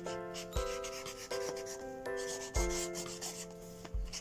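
Permanent marker drawing on a chess mat in short scratchy strokes, over background music of steady chords with a soft beat.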